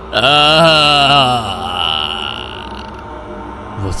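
A sudden horror sting: a loud, drawn-out, wavering wail with vibrato and a shrill high tone over it, strongest for the first second and a half and then dying away.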